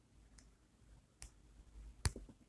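Near silence broken by two short clicks, the second louder, of fingers tapping on a phone's touchscreen.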